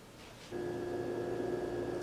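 A steady tone begins suddenly about half a second in and holds at one pitch without wavering.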